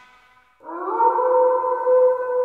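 The last of the music fades away, then about half a second in a wolf howl begins, rising into one long held note.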